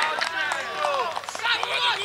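Footballers shouting and calling to one another during play, several short cries overlapping.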